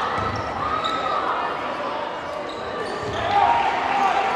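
Basketball bouncing on a hardwood gym court, a few thuds, under players' and spectators' shouts and voices in the gymnasium, with a louder shout near the end.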